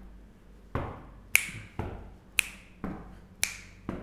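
Finger snaps alternating with duller hand taps, seven strokes in all. They beat out the uneven long-short grouping of a seven-beat (7/8) rhythm, repeating about once a second.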